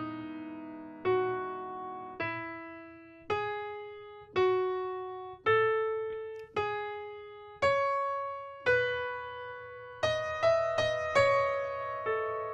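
Software piano (Pianoteq) playing a slow single-note melody, one note about every second, each left to ring and fade as the line climbs. About ten seconds in the notes come quicker and overlap.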